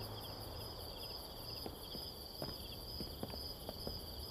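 Crickets chirping steadily, a continuous high, pulsing trill, with a few soft footsteps in the second half.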